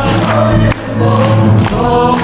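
Mixed church choir singing a hymn in unison with a man's lead voice, accompanied by guitars with a held bass note.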